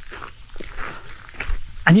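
Faint footsteps and rustling of a person walking, then a man's voice beginning to speak near the end.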